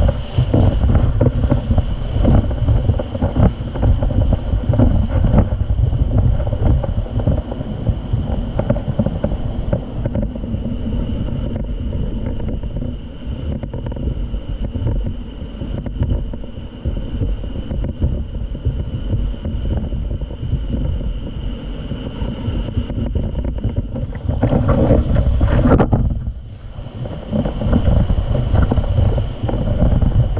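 Whitewater rapid rushing around an inflatable rowing raft, heavily mixed with wind buffeting on the camera's microphone. The rushing is loudest for the first ten seconds or so and eases somewhat as the raft reaches calmer water, with one more loud surge near the end.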